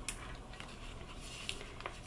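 Faint handling sounds: a thin plastic chocolate transfer sheet rustling in the hands, with a few light ticks.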